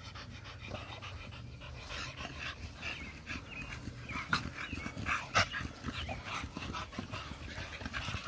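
An American Bully dog panting close by in quick, short breaths, with a couple of sharp clicks near the middle.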